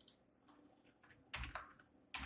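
Computer keyboard being typed on: a click at the start, a few light taps, then one louder keystroke about one and a half seconds in.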